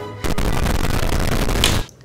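A loud, harsh burst of noise, about a second and a half long, cutting in and out abruptly.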